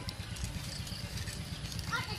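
Wood-charcoal fire crackling under a wire grill of whole shrimp, a steady low rumble with scattered small pops and clicks.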